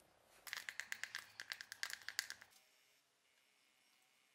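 Wooden stick stirring two-component paint in a small plastic cup, knocking against the cup in a quick run of clicks that lasts about two seconds.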